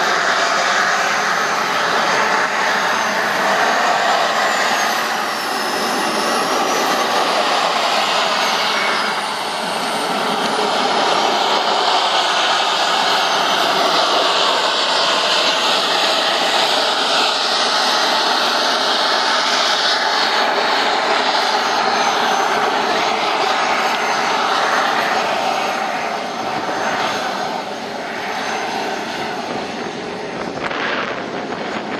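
Turbine engine of a radio-controlled F-16 model jet running loudly on the ground, a steady jet rush with a high whine that wavers up and down in pitch. The sound eases off a little near the end.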